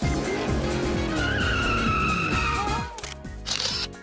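Car tyres squealing in a long drift, as a cartoon sound effect over electronic music. Near the end comes a short burst like a phone camera shutter taking a selfie.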